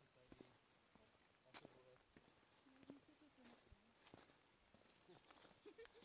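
Near silence: faint, indistinct voices of nearby people, with a few soft footsteps on a gravel trail.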